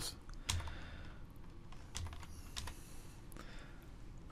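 Typing on a computer keyboard: a few separate, unhurried keystrokes.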